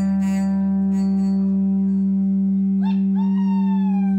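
Live acoustic music holding a single sustained low note with ringing guitar overtones, steady in level. About three seconds in, a few short notes sound on top, each sliding slightly downward as it fades.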